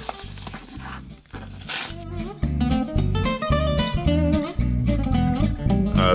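A folding knife slitting open a padded mailing envelope, with rustling of the packaging; from about two seconds in, background guitar music plays over it and is the loudest sound.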